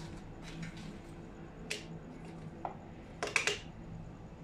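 Hard plastic objects knocking and clicking against each other as they are rummaged through in a plastic bag: a few scattered clicks, then a louder quick cluster of knocks near the end.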